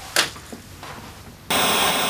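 Television static: a loud, steady white-noise hiss that starts suddenly about one and a half seconds in. Before it, quiet room tone with one brief click just after the start.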